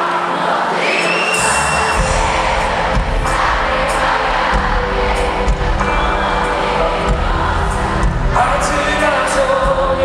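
Live concert music in a large arena, with the crowd singing along and cheering. The bass comes in strongly about a second and a half in.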